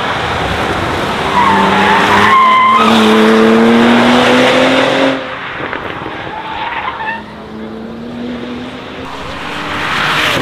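Bentley Batur's twin-turbocharged W12 engine accelerating hard, its note rising in pitch, with brief tyre squeal early on. It is loud for about the first five seconds, drops off suddenly as the car pulls away, and then rises again more faintly near the end.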